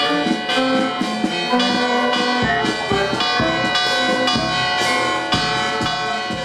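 Italian town wind band playing a march: clarinets and brass carry the melody over a steady drum beat of about two strokes a second.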